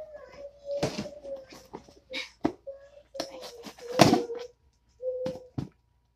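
Utility knife blade jabbing into and tearing a cardboard box: a handful of sharp cracks and rips, the loudest about four seconds in, with a steady hum-like tone running under them.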